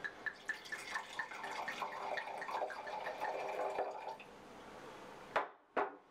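Red wine glugging out of a glass bottle as it is poured into a wine glass, about four glugs a second, stopping about four seconds in. Near the end come two sharp knocks as the bottle is set down on the glass tabletop.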